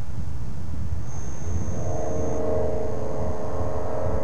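Engine of an Avid light kit airplane running as the plane flies low toward the microphone: a steady drone over a low rumble, its engine note coming up about a second and a half in.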